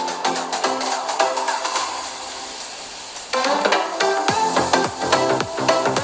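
Background music with a steady drum beat, which grows louder and fuller about three seconds in.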